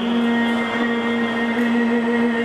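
A male kirtan singer holding one long, steady sung note of a Gurbani shabad, with a steady harmonium drone beneath it.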